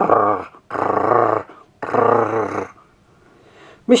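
A dog growling: three long growls in quick succession, each under a second.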